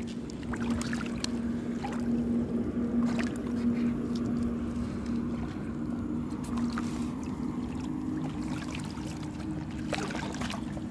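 Steady low hum of a fishing boat's engine running, with faint rustles and taps as a net is hauled in by hand.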